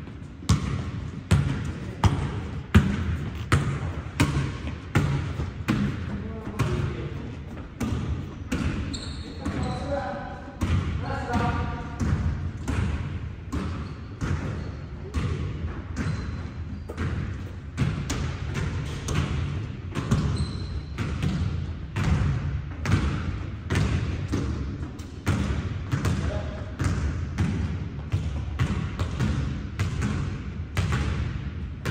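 Basketballs being dribbled on a hardwood gym floor: a steady run of bounces, about two a second, going on throughout. A voice is heard briefly around ten to twelve seconds in.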